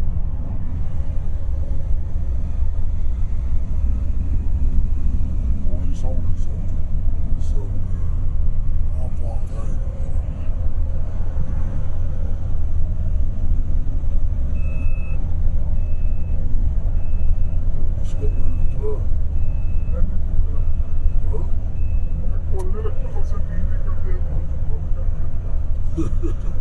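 Steady low rumble of engine and tyre noise heard inside a car cabin while it drives along at road speed. About halfway through, a string of roughly eight short, high beeps sounds at an even pace, a little under a second apart.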